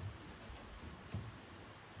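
Faint rustling and a couple of soft knocks as a stiff roll of fine metal wire mesh is handled and unrolled.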